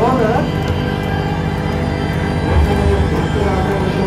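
Background music with a steady low drone and held tones, with people's voices briefly over it near the start and around the middle.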